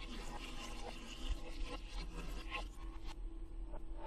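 Dyed water poured from a glass into a stainless steel sink, splashing faintly, cutting off about three seconds in. A steady low hum underneath.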